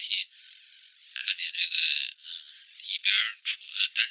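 Irregular crackling and scratching of a metal ear instrument working hardened earwax loose inside the ear canal, thin and high-pitched, with a short lull about half a second in.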